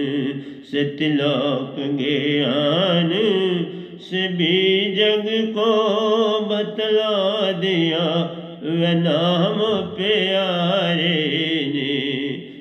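A man singing a Hindi devotional bhajan in long, wavering held notes with slow pitch glides, pausing briefly for breath between phrases.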